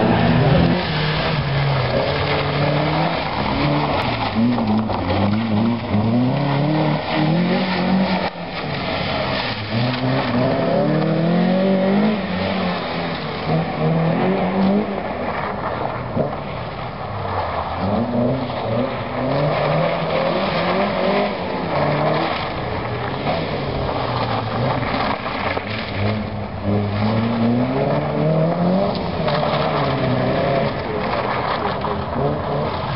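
Fiat Cinquecento engine revving hard and falling repeatedly as the car accelerates, brakes and turns through a tight cone course, with some tyre squeal.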